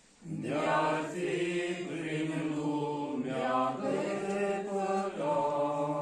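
A congregation of men singing a slow hymn together from hymnbooks, in long held notes. A new line begins just after a short breath pause at the start.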